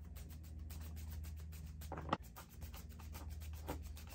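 A paintbrush scrubbing silver paint over a resin batarang in quick, even back-and-forth strokes, blending the paint in. A couple of strokes about two seconds in and near the end are louder.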